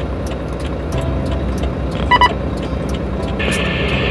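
Truck diesel engine idling steadily in the cab while the dash-mounted two-way radio is switched on: a short electronic beep about two seconds in, then a burst of radio static hiss near the end.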